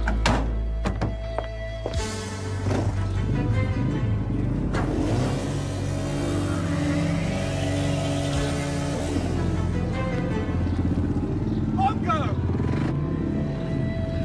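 Background music over a dirt bike's engine running and revving.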